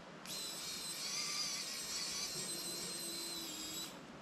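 Small electric screwdriver running as it drives a screw into a drone frame: a steady high-pitched whine that starts abruptly a quarter second in and stops abruptly just before the end, about three and a half seconds long.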